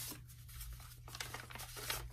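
Soft rustling and scraping of paper packaging being handled as a clothing box is opened, with a few light clicks.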